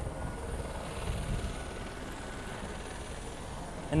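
Steady low rumble of open-air ambience with no distinct events, and a faint steady high tone over the first couple of seconds.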